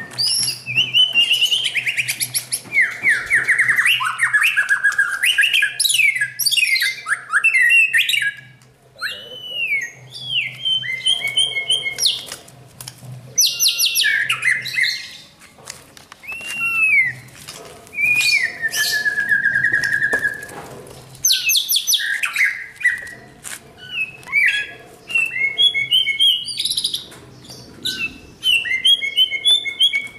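Caged white-rumped shamas singing: a rich, varied song of clear whistled notes, up-and-down glides, rapid trills and sharp chips, delivered in loud runs with short pauses between them.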